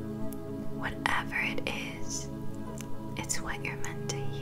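Soft ambient meditation music of sustained held tones, with a few faint breathy whispers over it.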